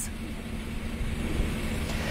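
Steady low rumble and hiss of outdoor background noise, with a faint steady hum, picked up on a live field microphone.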